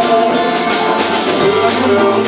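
Live band playing an instrumental passage between sung lines: strummed acoustic guitar over electric guitar and a drum kit keeping a steady beat.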